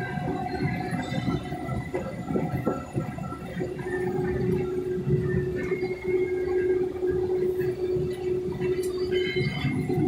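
Combine harvester running while cutting soybeans, heard from inside the cab: a dense low rumble, with a steady hum that comes in about a third of the way through and drops out just before the end.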